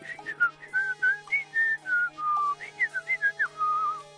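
A cartoon boy whistling a carefree tune through pursed lips: a run of short notes sliding up and down, ending on a longer held note just before the end.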